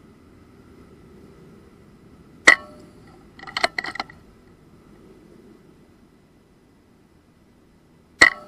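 Edgun Wildcat PCP air rifle firing a single shot about two and a half seconds in, a short sharp crack with a brief ring. It is followed about a second later by a quick run of several mechanical clicks.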